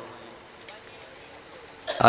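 A quiet pause in a man's amplified chanting: faint hall noise through the microphones, with a short breath just before his voice returns near the end.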